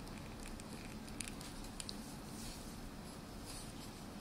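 Faint scratching and small ticks of a ballpoint pen drawing on paper, with a few sharper clicks between one and two seconds in and soft rustles of paper under the hand later.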